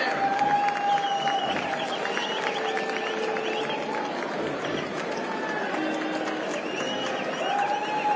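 Audience applause in a large hall: a steady stream of hand claps with crowd voices mixed in.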